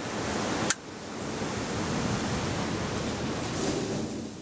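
Sea surf washing on a rocky shore: a steady rushing hiss, with a single sharp click less than a second in.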